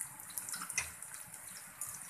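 Onions and whole spices frying in oil in a pan, sizzling steadily with scattered light crackles.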